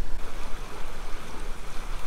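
Creek water flowing over rocks: a steady rushing hiss, with a low, uneven rumble underneath.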